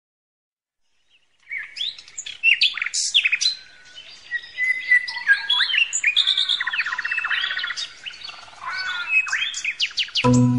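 Several birds chirping and singing, starting about a second and a half in: many overlapping rising and falling whistled calls, with a fast even trill partway through.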